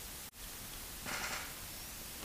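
Steady static hiss of an idle audio line, broken by a very brief dropout near the start, with a short rustling burst of noise about a second in.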